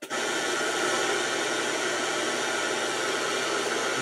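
Ghost box (spirit box radio) switched on and sweeping through radio stations in reverse, giving a steady hiss of static that starts suddenly.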